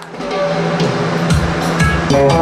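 Electric guitar played through an amplifier, starting into a tune: a few single low notes at first, then deeper, fuller notes and chords near the end.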